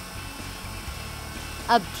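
Inalsa Maxie Premia food processor's motor running steadily, its plastic kneading blade spinning dry flour in the bowl before water is added: a steady low hum.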